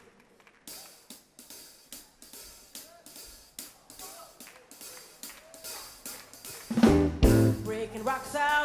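Drum kit playing a solo groove intro on cymbals and drums, sharp strokes about three a second. Near the end the band comes in much louder with heavy low bass notes and bass drum.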